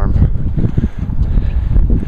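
Wind buffeting the microphone: a loud, uneven rumble that rises and falls in gusts.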